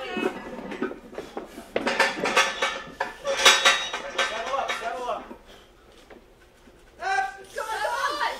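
Metal clinks and clanks of barbell and weight plates, mostly in the first half, among people talking.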